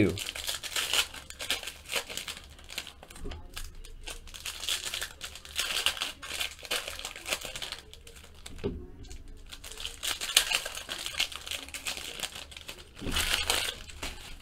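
Foil wrapper of a Fleer Ultra Spider-Man trading-card pack being crinkled and torn open by hand, crackling in irregular bursts, with a short lull a little past the middle and a last burst near the end.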